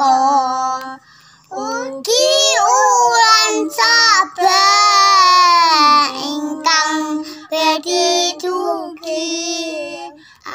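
A young girl singing a prayer in a high child's voice, in phrases with long held notes and short breaks between them.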